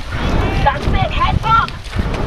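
Shouting voices, loud and not made out as words, over a steady rumble of wind on the microphone.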